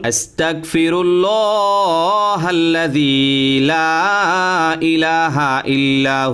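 A man chanting an Arabic supplication of repentance (istighfar) in a slow melodic voice, with long held notes and short pauses between phrases.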